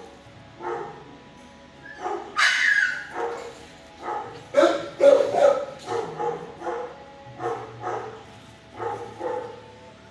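A dog barking repeatedly, about one or two barks a second, with one higher yelp about two and a half seconds in.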